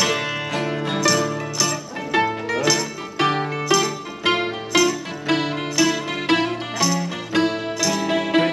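Bouzouki and acoustic guitar playing together live: a plucked, ringing melody over sustained bass notes and strummed chords, with strong accents about once a second.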